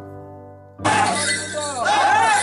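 A held music chord fading away, then about a second in a sudden loud burst of bright, clashing, ringing sound with bending tones that carries on.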